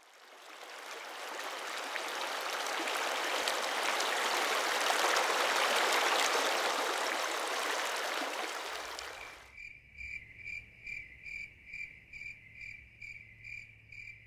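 Rushing water of a mountain stream cascading over boulders fades in from silence, swells and fades away after about nine seconds. Then steady chirping of crickets, two or three chirps a second, carries on to the end.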